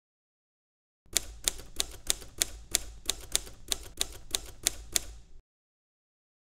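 Typewriter keys striking one at a time, about thirteen even keystrokes at roughly three a second over a low hum. They start about a second in and stop about five seconds in.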